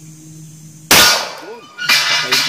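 A single handgun shot about a second in: a sharp, loud crack with a short ringing tail. Another loud sudden sound begins just before the end.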